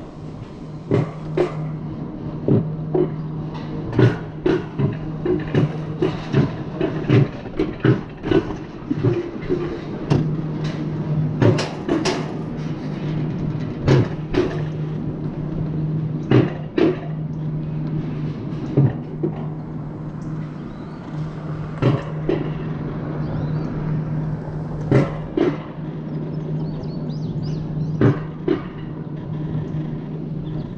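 Mountain coaster sled running along its steel rail: a steady low hum with sharp clicks and knocks about once a second.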